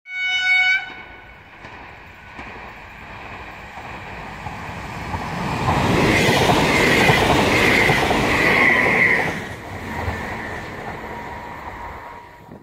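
A short horn blast from an approaching PESA push-pull train, its driving trailer leading. The train then passes close by: the rumble and clatter of wheels on rail build up, are loudest from about six to nine seconds in, then fade.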